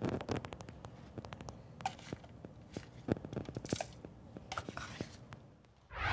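Metal scoopula scraping and tapping on a plastic weighing dish as calcium chloride powder is scooped out: a run of small irregular clicks and scratchy scrapes.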